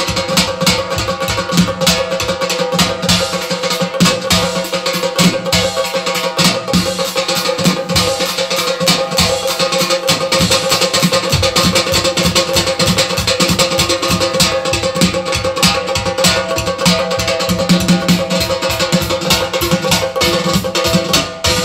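Fast live Azerbaijani wedding dance music (ritm) led by an electric guitar over a quick, driving drum beat, loud and unbroken.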